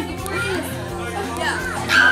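Several people talking over one another, children's voices among them, over steady background music.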